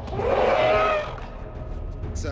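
Film soundtrack: a loud pitched cry lasting under a second, starting just after the beginning, over a low bed of film score.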